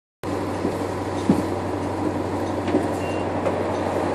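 Cabin noise inside a NovaBus LFS diesel-electric hybrid transit bus: a steady drone from its Cummins ISL9 diesel and Allison hybrid drive, with a low hum. A few short rattles and knocks come through, the loudest just over a second in.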